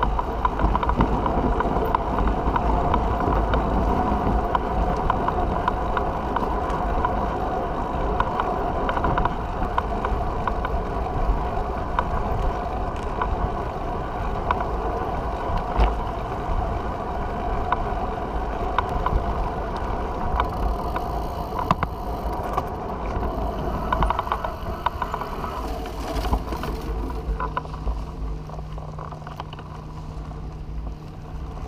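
Recumbent trike rolling along pavement: a steady hum of tyres and drivetrain with frequent small rattles, picked up by a camera mounted on the trike's frame. It grows quieter near the end.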